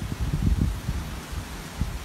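Wind buffeting the microphone: an irregular low rumble that swells and drops in gusts, with a faint hiss above it.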